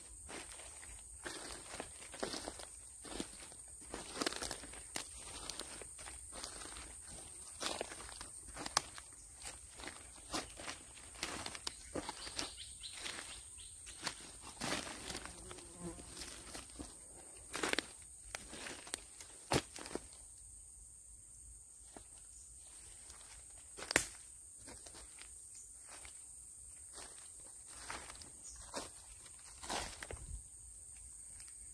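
Footsteps crunching through dry leaf litter and twigs on a forest floor, with leaves rustling; the steps thin out in the last third, with one sharp click at about 24 seconds. A thin steady high tone runs underneath.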